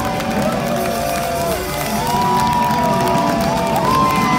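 Live band music with long held and sliding tones, over a festival crowd cheering and clapping.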